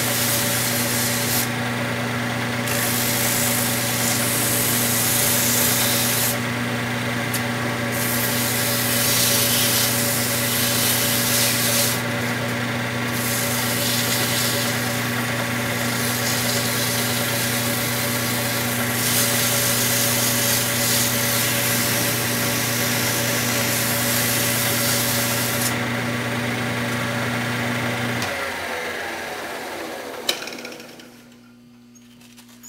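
Wood lathe motor running with a steady hum while sandpaper is held against the spinning wooden spoon, making a continuous rubbing hiss that eases off and returns a few times. Near the end the lathe is switched off and its hum winds down.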